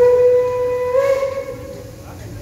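Steam whistle of DB class 23 locomotive 23 058, one blast of nearly two seconds on a single steady note that steps up slightly in pitch about a second in, sounded as the departure signal.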